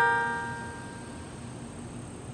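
The fading ring of a loud bell-like chime with several steady tones. It dies away over about the first second and leaves faint steady outdoor background.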